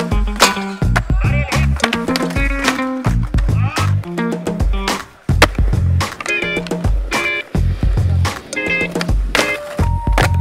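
Skateboard on a concrete skate plaza, its wheels rolling and its board clacking on pops and landings, with a sharp clack about five seconds in. All of this sits under loud background music with a steady beat.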